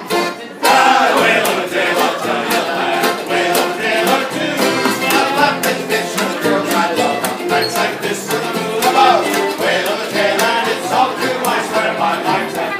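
Small acoustic band of accordion, upright bass and strummed acoustic guitar starting a tune suddenly about half a second in, the strumming keeping a steady beat, with voices singing along.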